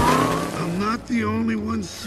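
Animated race car's engine revving up and down with tyres squealing, its pitch rising and falling in several arcs with a brief break about a second in.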